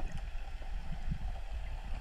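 Muffled underwater water noise: a faint, even low rumble with some gurgling, picked up by a camera submerged over a kelp reef.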